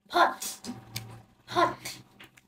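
A voice says a short one-syllable word twice, about a second and a half apart: a short-o phonics drill word spoken aloud.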